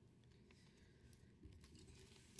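Near silence: room tone with a few faint clicks and light rustling of paper sheets being handled on a table.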